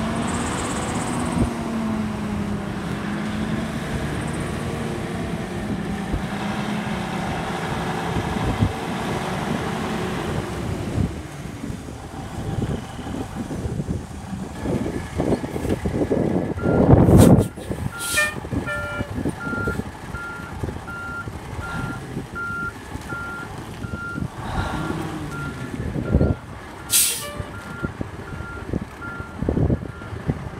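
Heavy diesel service truck driving off, its engine note rising and falling through gear changes. About halfway through a loud burst of air-brake hiss, then a steady backup alarm beeping about one and a half times a second, with another short sharp air hiss near the end.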